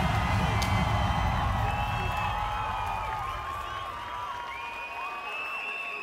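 Crowd cheering and whooping over music with a heavy bass beat. The music fades out about halfway through and the cheering dies down.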